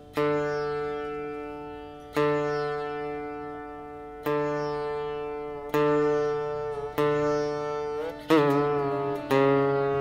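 Siddha veena, a lap-held slide string instrument, playing slow single plucked notes in Raga Yaman Kalyan, each left to ring and fade before the next, about one every one to two seconds. Near the end a note glides up and wavers in pitch.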